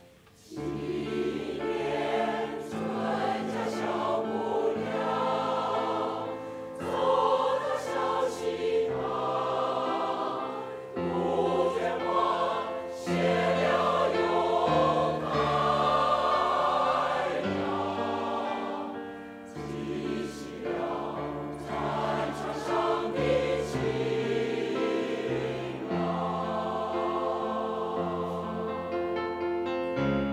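Mixed choir of older men and women singing a piece in parts, with sustained chords, coming in about half a second in after a short pause.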